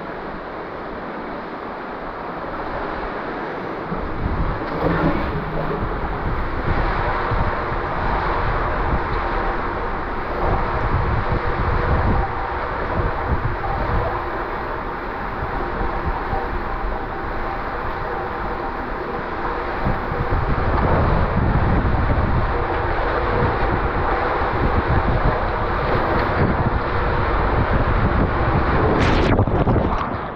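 Rushing water and a rider's body sliding through an enclosed body water slide tube: a steady, rumbling rush that gets louder about four seconds in, ending in a splash into the pool near the end.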